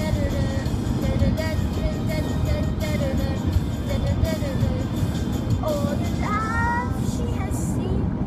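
A boy singing a melody, heard inside a moving car's cabin over the steady low rumble of road and engine noise.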